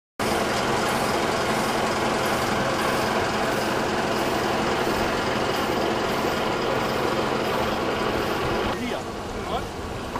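Tour coach engine running close by, a steady, loud hum and rumble that gives way to voices about nine seconds in.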